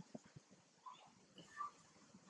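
Near silence with faint wet chewing and smacking from a macaque eating a piece of ripe mango, and a few soft, short, high chirps.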